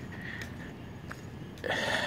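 Night insects, crickets, trilling as one steady high note over a faint outdoor hiss. A louder rush of noise rises near the end.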